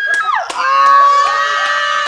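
Several people screaming in excitement. A high shriek drops away about half a second in, and another long, high scream follows.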